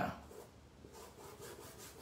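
Faint rubbing of a size 12 paintbrush stroking green paint across cloth.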